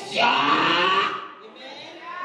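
A woman's voice over a microphone, a single drawn-out wordless cry lasting about a second, then falling away to fainter voice sounds.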